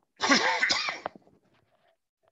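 A man coughing, one hoarse, voiced cough burst lasting just under a second near the start.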